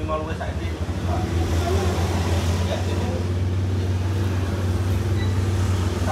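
Street traffic: a steady low engine hum from motorbikes and cars on the road, with faint voices in the background.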